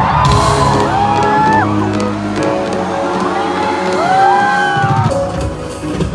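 Live concert music played loud over a stadium sound system, a melody gliding up and down over held bass notes, with crowd voices whooping and shouting underneath.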